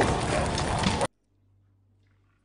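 Fire burning loudly with a few short wailing cries over it; it cuts off suddenly about a second in, leaving near silence.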